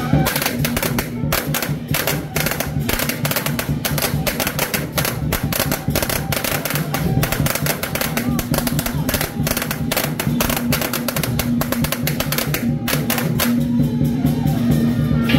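A long string of firecrackers popping rapidly and irregularly, stopping about a second before the end, over steady procession music.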